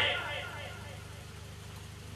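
A voice over the stage loudspeakers trails off at the start, leaving a steady low engine-like hum.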